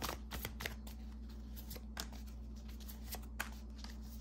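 Cards being handled and dealt onto a card spread: a string of light, irregular clicks and slaps of card stock as hexagon-shaped cards come off a stack and are laid down. A low steady hum runs underneath.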